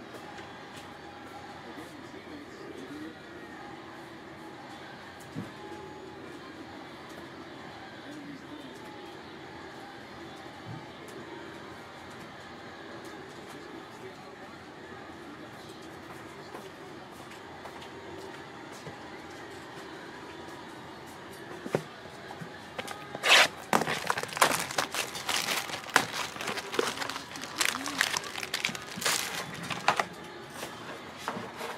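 Card packaging handled by hand: from about 23 s, a few seconds of loud, irregular crinkling and crackling as a Bowman University Inception card box is opened and its foil pack taken out.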